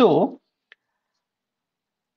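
A man says 'so', then a single faint computer-mouse click comes about three-quarters of a second in, followed by dead silence.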